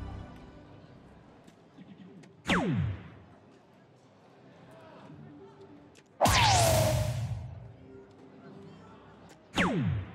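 Three darts land on an electronic soft-tip dartboard, each hit setting off the machine's sound effect: a quick swoop falling in pitch about two and a half seconds in, a louder and longer burst with a falling tone about six seconds in, and another falling swoop near the end.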